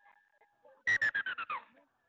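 A high-pitched call from a person close to the microphone, about a second in, gliding down in pitch over well under a second.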